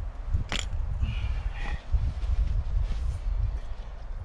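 A single sharp click about half a second in as a Trangia Mini cook set is set down, over a steady low rumble.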